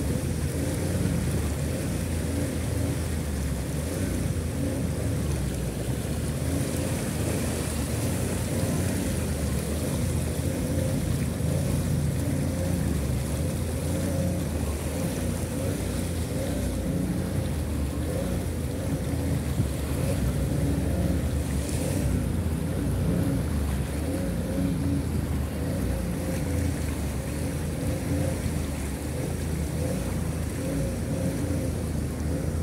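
Vehicle driving through a flooded street: a steady engine rumble mixed with floodwater churning and splashing along the vehicle's side.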